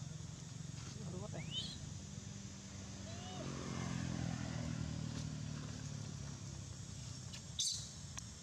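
A distant motor vehicle's engine hums steadily, swelling in the middle. A quick high rising squeak comes about a second and a half in, and a short sharp high chirp near the end.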